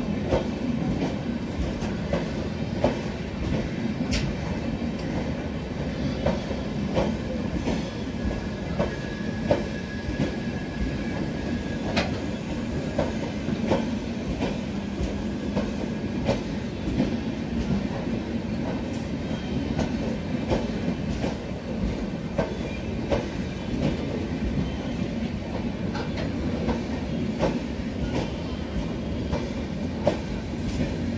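Passenger train coaches rolling past along a platform on arrival: a continuous rumble with the wheels clicking over rail joints.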